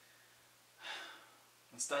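A man's single audible breath, a short airy burst about a second in, against quiet room tone; speech begins right after.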